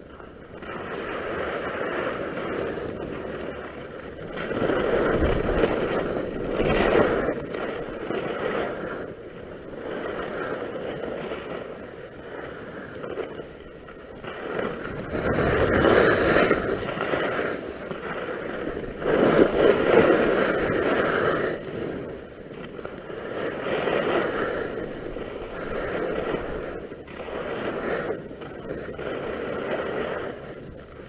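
Skis scraping and carving over packed snow on a downhill run, a continuous rushing noise that swells and fades in waves every few seconds.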